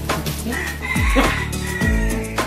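Background music with a steady beat and deep falling bass hits. Over it, a long high-pitched call is held from about half a second in until near the end.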